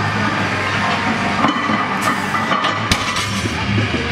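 Background music with a steady bass line, and a single sharp knock about three seconds in.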